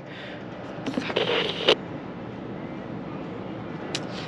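Steady outdoor background noise, with a short rustle about a second in and a brief click near the end.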